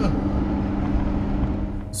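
Steady engine drone and road noise heard from inside a moving car, with an oncoming bus going by close alongside at the start, its sound dropping in pitch as it passes.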